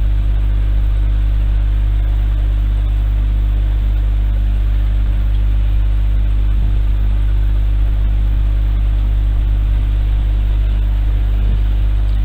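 A steady low hum over a bed of hiss, unchanging throughout.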